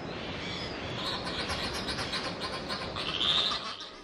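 Chatham albatross breeding colony: many birds calling at once in a dense, steady clamour, a little louder about three seconds in.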